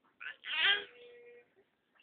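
A baby's short fussing cry: a brief squeak, then one louder cry about half a second in that trails off.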